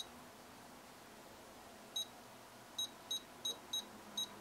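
Short high-pitched key beeps from a Futaba T14SG radio transmitter as its menu keys and touch dial are pressed. There is one at the start and another about two seconds in, then four in quick succession near the end, about three a second.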